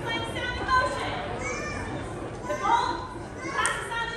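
Several children's voices talking and calling out at once, high and overlapping, with no clear words.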